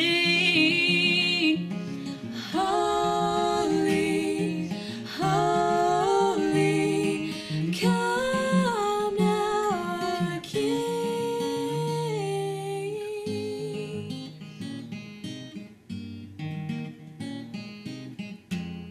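Female voices singing wordless, held and sliding notes in harmony over a steel-string acoustic guitar. About two-thirds of the way through the voices stop and the guitar plays on alone, softer.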